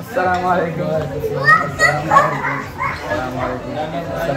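Several people talking at once in lively, overlapping chatter, with a teenage boy's voice among them.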